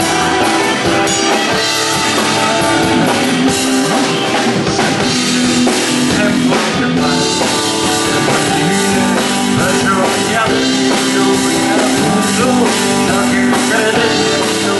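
Live rock band playing: two electric guitars over a drum kit, loud and steady throughout.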